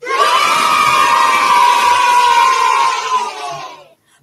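A crowd of children cheering and shouting together. It starts suddenly and fades away near the end.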